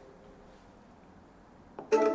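Quiet room tone, then near the end a sharp click followed by a ringing, bell-like chime that dies away.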